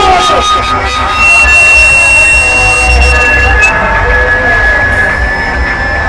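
Loud, distorted amplified music with a voice over crowd noise, and a heavy low rumble throughout. Two long steady high tones are held across the middle and second half.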